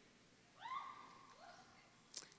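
Near silence, with one faint high-pitched vocal sound about half a second in that rises and then holds for roughly a second: a distant voice.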